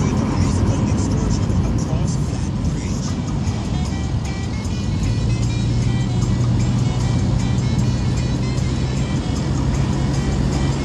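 Music with a singing voice, over the steady running and road noise of a moving car.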